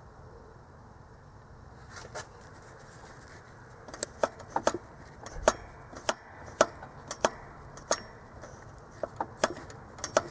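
Light, irregular metallic clicks and taps, about a dozen, starting a few seconds in, as a coil return spring is hooked onto the turbo wastegate actuator rod by hand.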